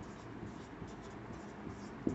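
Marker pen writing on a whiteboard: faint, short, irregular strokes as digits are written.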